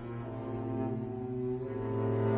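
Classical chamber music from a concert recording: low sustained instrumental notes that swell steadily louder.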